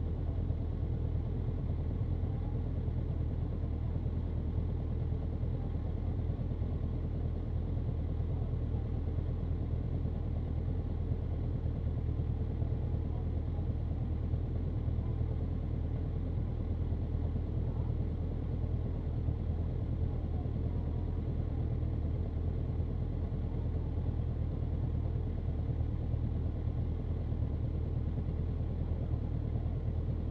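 Motorcycle engine idling steadily, a low even running note with no revving.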